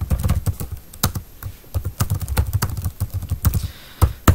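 Typing on a computer keyboard: a quick, irregular run of key clicks, several a second.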